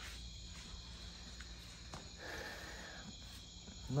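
Faint night-time crickets chirping steadily in the background, with a brief faint sound a little past halfway.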